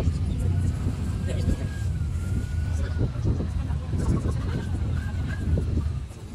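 Longtail boat's inboard engine running steadily with a deep rumble, with a thin wavering high tone heard over it twice.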